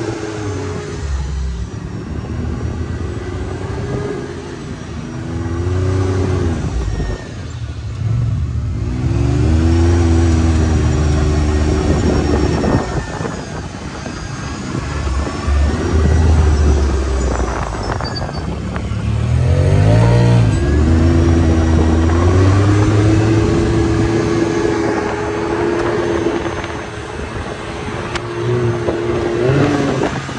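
Can-Am Maverick 1000 side-by-side's V-twin engine, heard from inside the open cab while driving, revving up and easing off again and again as it climbs and drops over sand.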